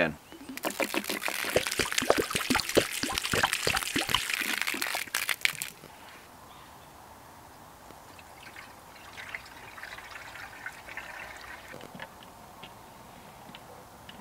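Water glugging and splashing loudly out of a plastic water container as the Lifesaver Cube purifier is emptied of its priming rinse. It stops abruptly after about six seconds. A few seconds later comes a much quieter trickle as clean water is poured from a plastic jug back into the cube.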